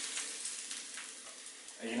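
Very hot olive oil sizzling on chopped red chilli, spring onion, garlic and crushed Sichuan peppercorns just after it is poured over them; the sizzle fades gradually as the oil cools.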